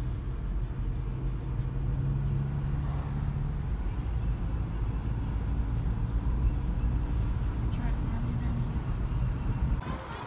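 Steady low rumble of a car driving along a street, with engine and tyre noise heard from inside the cabin.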